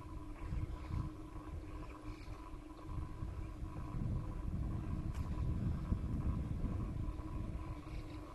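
Low, uneven rumble from riding along a paved path, with a faint steady whine underneath.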